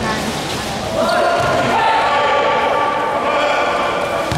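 Basketball bouncing on a hard court in a large hall. From about a second in, a long held pitched sound, a voice or tone, rises over it and is the loudest thing heard.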